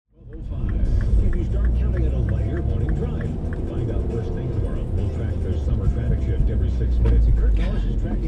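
In-cabin sound of a car driving: a steady low engine and road rumble, with talk from the car radio underneath. A quick light ticking, about three a second, runs through the first few seconds.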